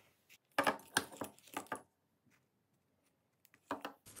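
Metal bulldog clips clicking and clinking as they are handled: a quick cluster of clicks in the first couple of seconds, then a couple more near the end.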